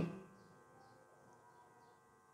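The last held note of a man's Quranic recitation cutting off at the very start, its echo dying away within a fraction of a second, then near silence.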